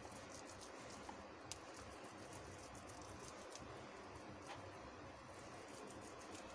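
Near silence, with a few faint soft clicks and light scraping from boiled potato being rubbed over a metal hand grater.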